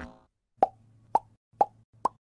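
Logo-animation sound effect: a series of short pops, about two a second, over a faint low hum.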